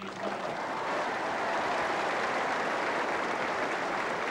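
A large audience applauding: dense clapping that builds over the first half second, then holds steady.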